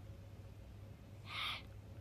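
A small long-haired dog gives one short breathy huff, about a second and a half in, over a low steady room hum.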